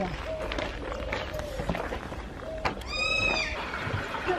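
A kea parrot calling once about three seconds in: a single high, drawn-out call of about half a second that dips slightly at its end.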